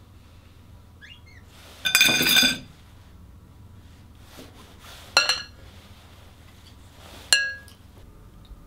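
Metal cutlery clinking against dishes on a dinner table: a ringing clatter about two seconds in, then two single ringing clinks near five and seven seconds in.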